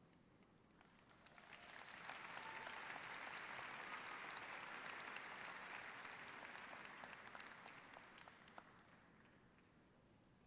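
Faint audience applause that swells about a second in, holds, and dies away near the end.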